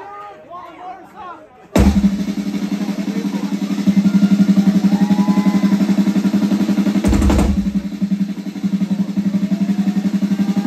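Live rock drum kit starting a solo: after crowd chatter, a fast, even drum roll bursts in suddenly about two seconds in and keeps going, with a heavy accented hit about seven seconds in.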